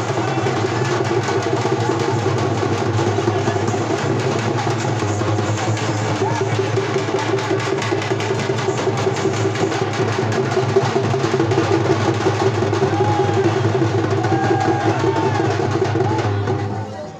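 A group of large stick-beaten drums played together in a dense, fast, unbroken beat.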